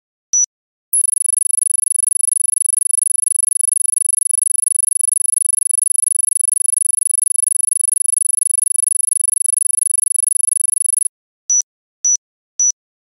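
Countdown-timer beeping sound effect: one short high electronic beep, then about a second in a steady, very high-pitched electronic tone with a rapid flutter that holds for about ten seconds and cuts off suddenly, after which the beeps return about twice a second.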